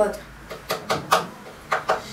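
Kitchen knife chopping chili peppers on a wooden cutting board: about five sharp, irregular knocks of the blade on the board.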